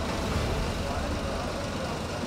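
Steady low rumble of idling fire truck engines, with faint voices in the background.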